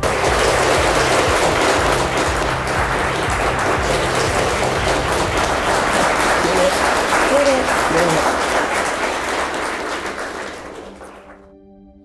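A roomful of guests applauding, the dense clapping running on and then fading away near the end.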